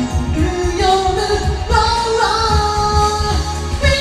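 A woman singing a J-pop song over a backing track with drums and bass, holding long notes in the middle of the phrase.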